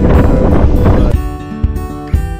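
Wind rumbling hard on the microphone over background music. About a second in, the wind noise cuts out suddenly, leaving the music alone: plucked acoustic guitar.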